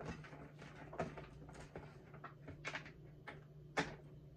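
Sliced vegetables being packed by hand into a glass jar: a string of light knocks and clicks against the glass, the loudest just before the end, over a steady low hum.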